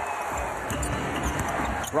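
A basketball being dribbled on a hardwood court, a run of short low thumps, over the steady noise of an arena crowd.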